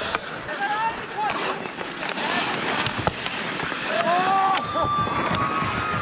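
Ice hockey play: skate blades scraping the ice, a few sharp clacks of stick on puck, and players shouting, with one long held shout from about four seconds in.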